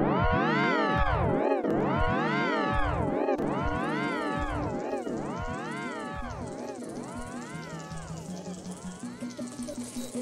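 Music: a warbling tone that swoops up and down in pitch about once a second, over a few low held notes, slowly fading out.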